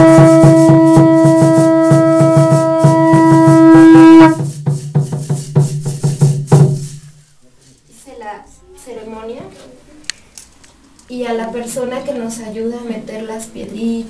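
A horn blown in one long, steady, loud note over rapid, even beating; the note stops about four seconds in. The beating goes on for a couple of seconds more, then quiet voices talk.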